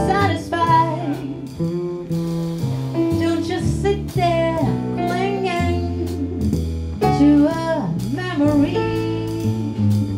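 Live jazz band: a woman singing a melody through a microphone, backed by upright double bass, drum kit with cymbals and keyboard.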